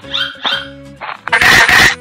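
Dog sound effect: two quick barks, then a louder, rougher snarling bark about a second and a half in, over light background music.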